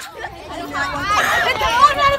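Children's voices chattering indistinctly, with other voices babbling in the background; the talk picks up after a short lull at the start.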